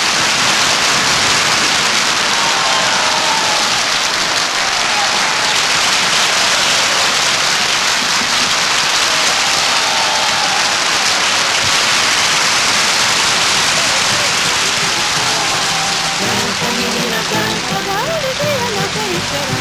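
Theatre audience applauding: dense, steady clapping that starts abruptly, with faint voices calling out over it. Music comes back in near the end.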